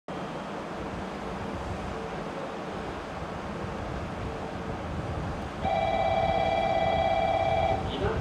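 Background rumble of a station, then a single steady horn blast lasting about two seconds from the approaching 883-series electric express train, starting suddenly near the end.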